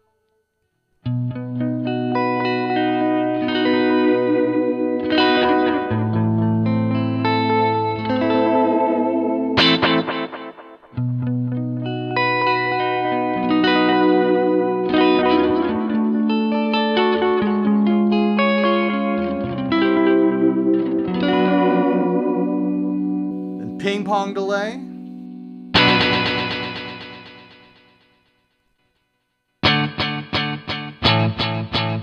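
Jazzmaster electric guitar played clean through a Line 6 POD Express set to its tape delay, notes and chords with echoing repeats. About three-quarters through there is a warbling sweep in pitch, then a single strum that rings out and fades before playing starts again at the very end.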